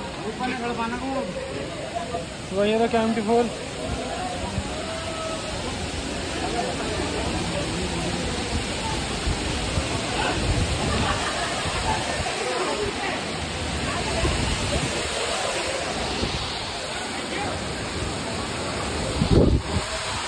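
Steady rush of Kempty Falls pouring into its bathing pool, with a crowd's chatter over it; the voices are clearest in the first few seconds.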